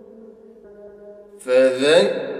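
Melodic Quranic recitation (tajweed chanting) by a single voice: a held note fades out, then a new phrase begins about one and a half seconds in, sliding upward in pitch.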